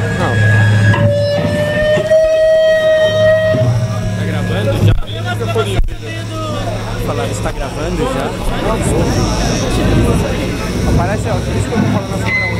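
Electric guitar amplifier hum on a live stage before a set, with a held guitar note ringing and drifting slightly up in pitch for a few seconds. Voices and chatter then carry on over the hum as the band gets ready to play.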